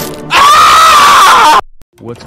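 A very loud, distorted scream of pain, starting about a third of a second in, lasting just over a second, then cutting off suddenly.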